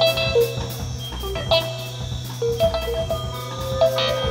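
Live band music: keyboard and guitar notes ring out over a steady low drone, with an even ticking beat.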